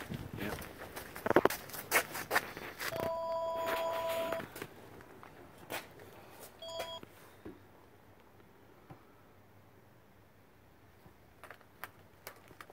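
An electronic beep: a steady two-tone beep lasting about a second and a half, about three seconds in, then a second, short beep near seven seconds in. A few knocks and rustles come before it.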